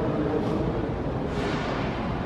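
Steady background noise of a large indoor hall, a continuous hum and hiss with faint, indistinct voices in it.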